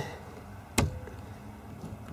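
A single sharp click about a second in as a blade fuse, held in a plastic fuse puller, is pushed into its slot in a car's fuse box.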